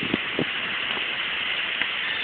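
Steady rushing of flowing creek water, with two faint clicks in the first half second.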